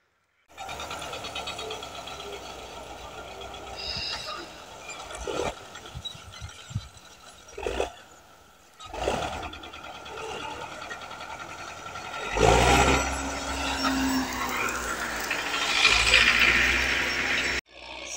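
Farm tractor engine running, with a few short knocks; about twelve seconds in it gets much louder and works harder as the tractor tries to drive out of deep snowdrifts.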